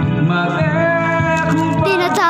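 Karaoke music: a backing track with held chords and a strong bass line, with a man singing into a microphone over it.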